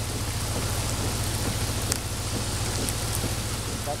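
Steady rain falling, with a few sharp drop ticks over it and a steady low hum underneath.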